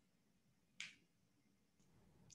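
Near silence: room tone, broken by a single short click a little under a second in.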